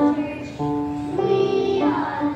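A song being sung, with held notes that step to a new pitch about every half second.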